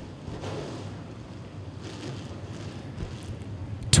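A pack of dirt-track open-wheel modified race cars running at pace speed in formation, a steady distant rumble of engines blended with wind on the microphone.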